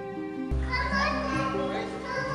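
Background music with held tones; from about half a second in, children's voices come in over it, talking and playing.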